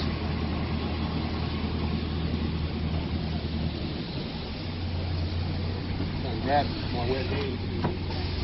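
Toyota Hilux's 2.7-litre four-cylinder petrol engine idling with a steady low hum, with traffic noise around it.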